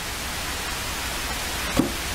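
Steady hiss of rain falling, with one short knock about two seconds in.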